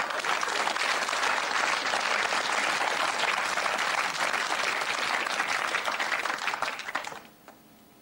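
Audience applauding, steady and dense, dying away quickly about seven seconds in.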